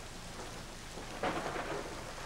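Steady rain falling, an even hiss that swells briefly about a second in.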